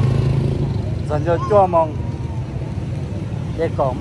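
Low hum of road traffic, a passing vehicle engine loudest in the first half-second and then easing off, under people talking.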